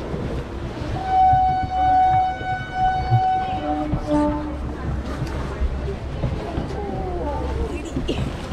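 A train horn sounds one long steady note for about two and a half seconds, followed by a short lower note, heard from inside a crowded train carriage over a low rumble.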